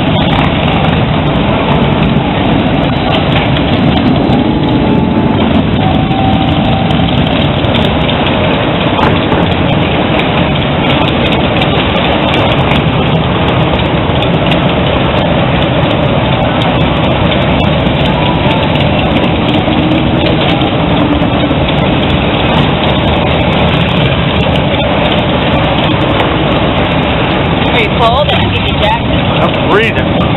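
Loud, steady street din of motorcycle engines running and passing, with crowd voices mixed in.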